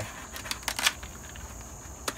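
Dry luffa gourd skin cracking and tearing as it is peeled by hand off the fibrous sponge, a few sharp cracks bunched about half a second to a second in.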